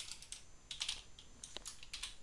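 Computer keyboard typing: a few quick, irregularly spaced keystrokes.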